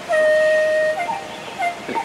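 Background music: a soft flute-like melody, one long held note followed by a couple of short notes.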